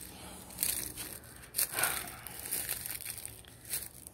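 Dry leaf litter and dead palm fronds crunching and rustling underfoot, in several irregular crunches.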